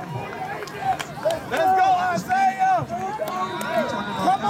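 Several high-pitched voices shouting and calling out in drawn-out yells, over general crowd noise.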